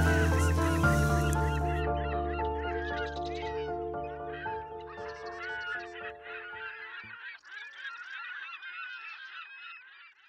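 Outro music of held, sustained notes fading out and ending about seven seconds in, over many birds calling in quick, overlapping squawks that carry on after the music stops and fade away near the end.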